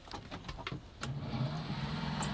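A few light clicks, then about a second in a sailboat's electric propulsion motor starts and runs with a steady hum, tested at the helm before leaving the dock.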